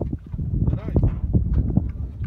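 People talking, with short irregular knocks and a low rumble of wind on the microphone.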